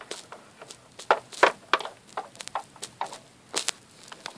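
Small plastic toy figurines clicking and knocking as they are handled and set down on a plastic playset: a dozen or so short, sharp taps at uneven intervals.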